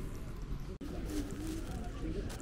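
A low bird call, about half a second long, a little past the middle, over street ambience with faint voices. The sound cuts out for an instant a little under a second in.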